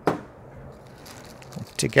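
A single short tap as a thin plate is laid down on a cloth-covered bench, fading almost at once into faint room hiss.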